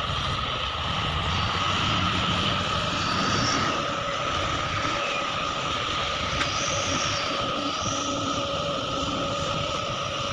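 Diesel engines of heavy mining machinery, excavators and a dump truck, running steadily: a continuous low rumble with a steady high whine over it.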